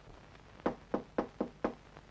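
Knocking on a door: five quick raps in about a second, starting a little after half a second in.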